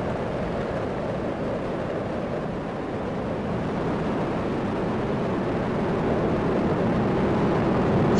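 Steady rumbling noise of Space Shuttle Discovery's launch, its two solid rocket boosters and three liquid-fuel main engines firing during the climb, growing slightly louder toward the end.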